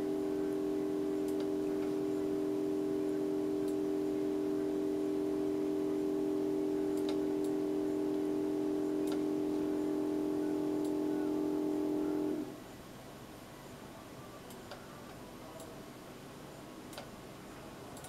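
Upright MRI scanner's gradient coils sounding during a sagittal T2-weighted imaging sequence: a steady hum of a few close pitches that cuts off suddenly about twelve seconds in as the sequence finishes. Faint scattered clicks follow.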